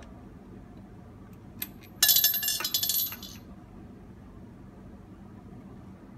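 Metal clinking and rattling from the chrome faucet diverter adapter and its screw nut as they are handled and tightened: a few light clicks, then about two seconds in a burst of rapid clinking with a high ring that lasts just over a second. Faint room tone otherwise.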